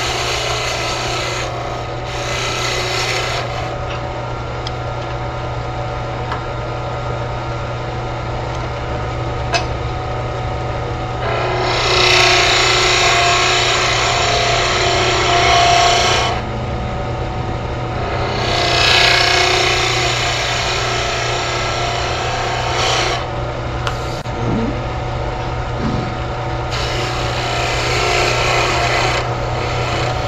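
A turning tool cutting a small spindle on a wood lathe, the hissing cut coming in five passes over a steady hum, the longest two lasting about five seconds each.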